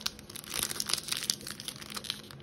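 Plastic wrapper of a Topps Big League baseball card pack crinkling in irregular bursts as fingers grip and work at its top seam to tear it open.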